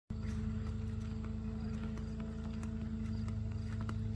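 A steady low machine hum of unchanging pitch, with faint scattered ticks.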